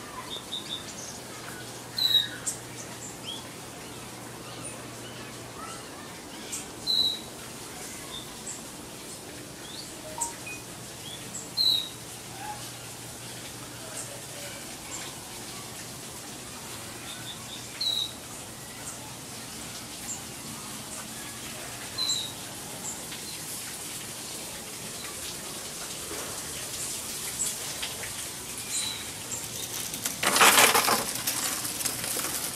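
Birds calling: one bird gives a short, sharp call about five times, a few seconds apart, over fainter scattered chirps.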